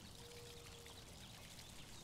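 Near silence: faint outdoor background hiss with a faint steady hum that fades in and out.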